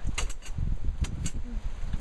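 Wind buffeting the microphone with a steady low rumble, broken by a few short rustles or clicks.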